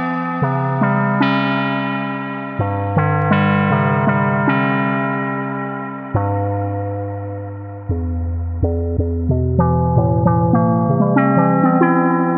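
Prophanity software synthesizer, an emulation of the Sequential Circuits Prophet-5, playing a run of chords over low bass notes. Each note starts sharply and fades away, and quicker notes come in the second half.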